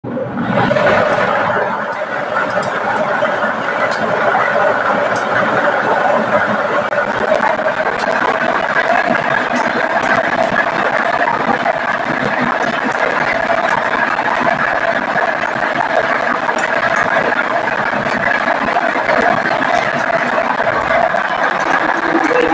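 Air-mix lottery draw machine running: a steady rush of air with many plastic lottery balls clattering against the clear acrylic chamber as they are mixed.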